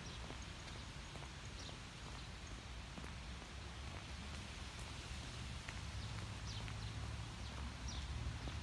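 Footsteps on a brick path over a steady low rumble of wind on a phone microphone, with a few faint high bird chirps.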